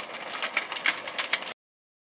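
Motorised toy fishing game turning, its plastic gears and fish clicking and rattling irregularly several times a second. The sound cuts out abruptly about a second and a half in.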